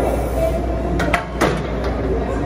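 Smith machine bar clanking metal on metal as it is racked onto its hooks, a few sharp knocks about a second in, with a steady gym hum behind.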